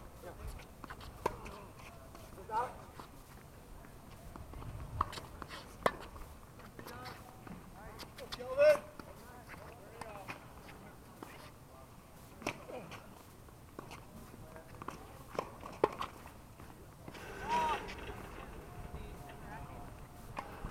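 Tennis balls being hit with rackets on hard courts, sharp pops every few seconds, with players' voices calling out across the courts; the loudest is a short call about nine seconds in.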